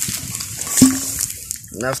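A metal basin clanks once as it is set down, about a second in, ringing briefly, after a stretch of light handling noise.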